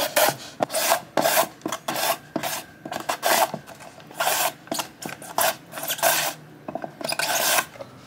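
A carrot being pushed back and forth over the metal blades of a julienne slicer and cut into thin strips, in repeated strokes about two or three a second, with a couple of short pauses.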